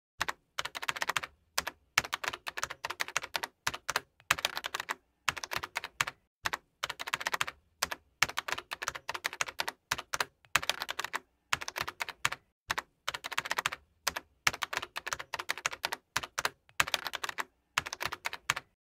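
Computer keyboard typing: quick runs of keystrokes in bursts of about a second, separated by short pauses.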